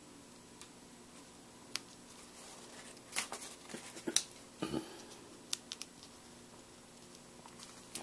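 Faint, scattered small clicks and taps of chipboard letter stickers being peeled from their sheet and pressed down by fingertip onto a cardstock page.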